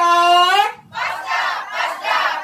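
A group of people shouting a chant in unison, their team name "Fasda": a loud held call, a short break just before the middle, then a rougher group shout.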